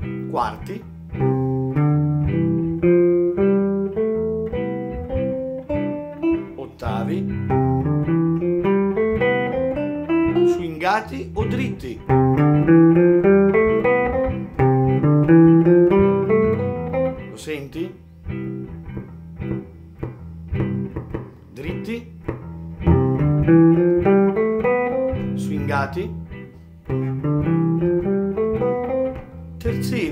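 Ibanez hollow-body archtop jazz guitar playing repeated ascending major-scale runs, note by note, over a steady low chordal layer.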